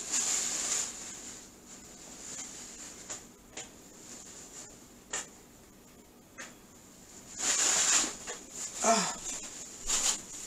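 Kitchen handling noises: two brief rustles about a second long, one at the very start and one about three-quarters of the way through, with a few light clicks and knocks between them, and a short vocal sound near the end.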